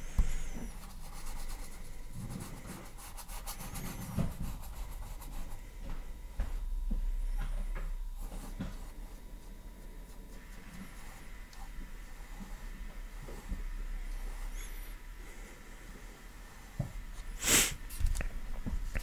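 Paintbrush bristles rubbing and dabbing on a stretched canvas as dark acrylic paint is blocked in, a faint scratchy brushing, with a short louder scuff near the end.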